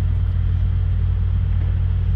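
A steady low mechanical drone, like an engine running nearby, holding at one even pitch throughout.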